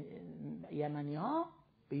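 Speech only: a man's lecturing voice drawing out his syllables, a long held tone and then a long syllable that rises and falls, breaking off about a second and a half in.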